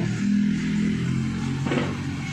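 Background music with a few low, plucked, guitar-like notes that hold and change pitch in steps.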